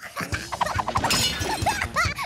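Cartoon crash effect of china crockery shattering, with a rapid run of sharp clinks and knocks that is thickest about a second in.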